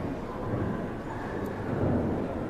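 Background noise of a large sports hall: a steady rumble and murmur that swells twice, about half a second in and near the end.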